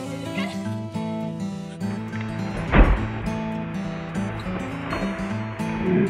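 Background music playing throughout, with one heavy crash about three seconds in as a rotten dead tree hits the leaf-covered ground.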